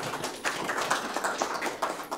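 Audience applauding, dense clapping that swells about half a second in.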